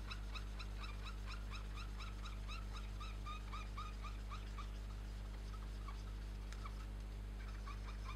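Felt-tip marker squeaking on paper as it is stroked back and forth to fill in an area, a quick run of short squeaks, about four a second, that thins out after about six seconds.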